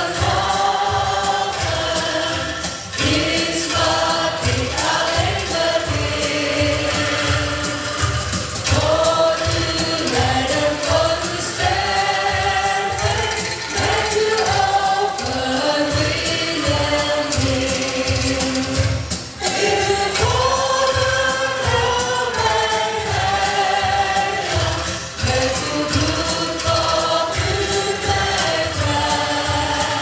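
An Indonesian hymn sung by three women on microphones with the congregation singing along, over a steady, rhythmic angklung accompaniment.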